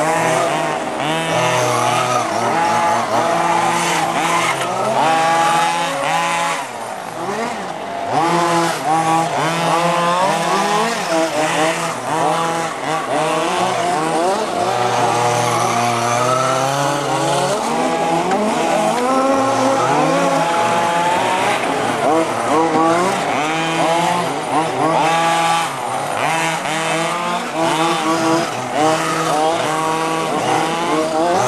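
Several radio-controlled model racing cars lapping together, their small engines revving up and down so the pitch rises and falls constantly as they accelerate and brake around the cones.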